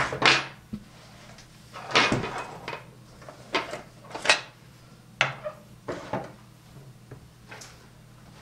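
Steel scissors and a pen being picked up and set down on a wooden tabletop, and a large cotton cloth being spread over the table: a run of about seven separate knocks and clatters with quiet gaps between them.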